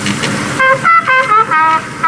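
Music: a trumpet-like horn plays a quick run of about six short notes, each at a different pitch. It is heard through a film editing desk's speaker.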